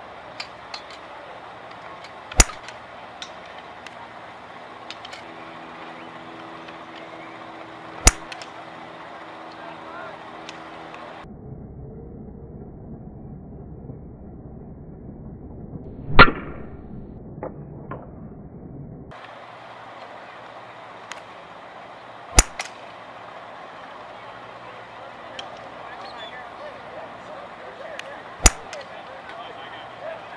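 A fairway wood striking golf balls off range turf: a sharp crack about every six seconds over background chatter and range noise. In the middle stretch the audio is slowed down, so the single strike there is deep and drawn out.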